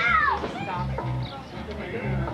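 A conjunto band playing live: button accordion, bajo sexto and electric bass, the bass sounding short, even held notes. Near the start a short, loud, high cry falls steeply in pitch over the music.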